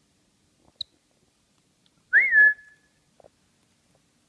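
A single short whistle that swoops up, dips and then holds level for a moment, with soft rustling of bedcovers under it. A faint click comes before it, and a couple of light ticks follow.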